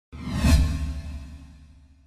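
Whoosh transition sound effect with a deep low boom, swelling to a peak about half a second in and then fading away over about a second and a half.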